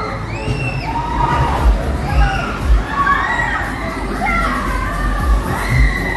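Riders on a spinning fairground sleigh ride screaming and shouting, many high voices overlapping in rising-and-falling cries, with irregular low thumps underneath.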